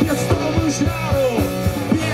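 Live rock band playing through a stage PA: a steady drumbeat with electric guitars, bass and keyboards, and a male voice singing.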